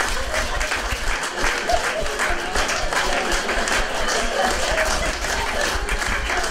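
A seated audience applauding steadily.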